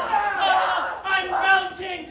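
Several people shouting wordless cries, in two stretches with a brief dip about halfway.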